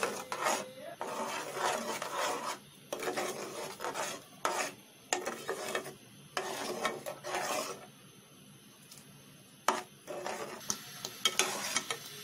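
A spoon stirring and scraping through thick mango pulp and sugar in an aluminium pot, in repeated rasping strokes, with a short lull about two-thirds of the way through. The pulp is cooking on low heat until the sugar dissolves.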